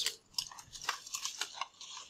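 Stylus tapping and scratching on a tablet screen while a number is handwritten, heard as a string of faint, irregular clicks.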